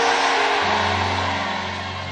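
Background music of sustained, held chords, with a deep low note joining about half a second in as the sound slowly fades.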